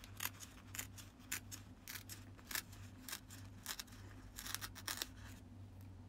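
Paper pages of a tear-off daily calendar being ripped and handled: faint, irregular crackling tears and rustles, with a denser run of rips near the end.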